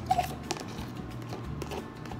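A few light taps and clicks on a plastic food container as mashed banana is tipped out of it into a bowl, the sharpest ones near the start, over a low steady hum.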